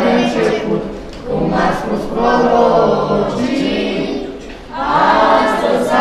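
A group of young carolers singing a Romanian Christmas carol (colindă) together unaccompanied, in phrases with two brief pauses.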